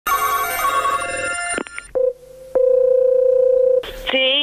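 A telephone ringing with a dense, trilling tone for about a second and a half, then two clicks. A steady telephone ringback tone on the line follows, sounding once for over a second as the call is placed.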